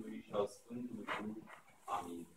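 A man's voice intoning in short phrases with brief pauses between them.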